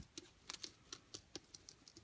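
Faint, irregular light clicks and crackles from fingers rubbing and pressing an embossed black-cardstock butterfly diecut against a paper-covered table while working metallic wax into it.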